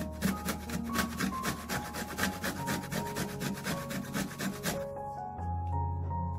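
Lemon peel being grated on a small plastic hand grater: quick rasping strokes, several a second, easing off briefly near the end.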